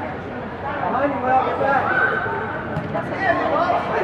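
Overlapping, indistinct voices of spectators and players calling out and chattering.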